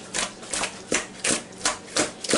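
Raw chicken wings tossed in a bowl to coat them in seasoning, making a rhythmic series of soft knocks and slaps, about three a second.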